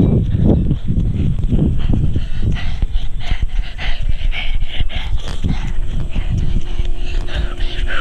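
A young child panting hard as he runs, breathing close to the microphone, over a steady rhythm of low thuds about twice a second.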